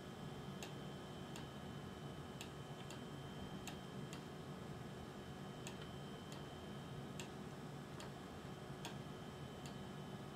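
Quiet, sharp clicks of a Macintosh mouse button being pressed and released while drawing freehand strokes, roughly one a second and somewhat irregular, over a faint steady hum.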